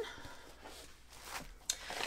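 Faint handling noise from a plastic-sleeved packet being moved on a desk: a soft rustle, then a few light taps near the end.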